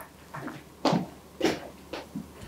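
A few short, sharp handling noises at a desk, the two loudest about a second in and half a second after that.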